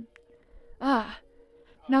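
A person sighs once about a second in: a short, breathy voiced exhale that falls in pitch.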